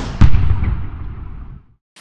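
Logo sting sound effect: the tail of a whoosh runs into a deep cinematic boom hit just after the start, which rings out and fades over about a second and a half, then cuts to silence.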